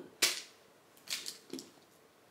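Handling noise on a handheld camera's microphone: one sharp hissing burst about a quarter-second in that fades quickly, then a couple of faint rustles as the camera moves through hair.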